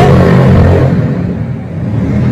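Loud motorcycle engine noise from the street below, heard from an apartment several floors up: a steady low exhaust note that dips about a second and a half in, then builds again.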